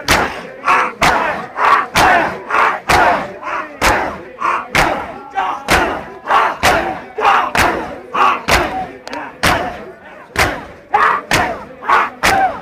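A crowd of mourners doing matam, hands striking bare chests together about twice a second in a steady rhythm, with a mass of men's voices chanting between the strikes.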